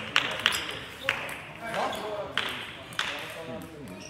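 Celluloid-style table tennis ball knocking sharply off bats and the table during a rally, a string of quick clicks about half a second apart that thin out toward the end, with voices murmuring in the background.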